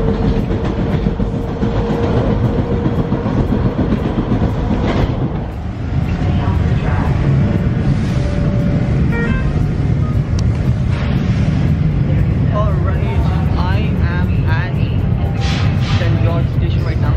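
Toronto subway train running, a steady low rumble with a whine in the first few seconds. Voices of people nearby come in over the rumble in the second half.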